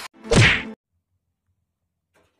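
A short editing sound effect, a quick swish with a steeply falling pitch lasting about half a second.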